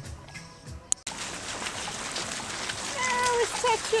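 Quiet background music for about a second, then an abrupt cut to the steady hiss and splash of fountain jets spraying into a shallow pool, heard close to the water. A brief voice comes in near the end.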